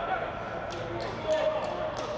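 Players shouting out on the pitch as a goal goes in, heard with no crowd noise, with a few short sharp knocks in between.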